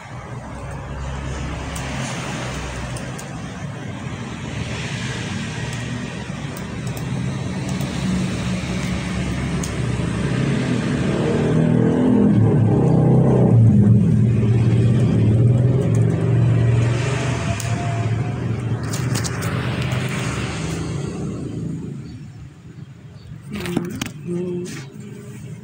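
Motor-vehicle noise like passing road traffic, growing to its loudest about halfway through and then easing off.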